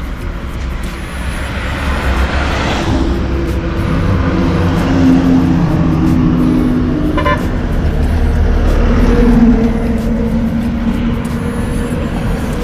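Road traffic passing close by on a highway: vehicle engines swelling and fading, loudest about nine to ten seconds in, with horns sounding.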